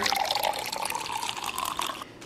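Liquid pouring into a container, its pitch rising slightly as it fills.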